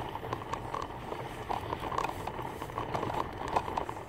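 Toy doll stroller rolling over asphalt, its plastic wheels and frame rattling and clicking with a constant rough scraping noise.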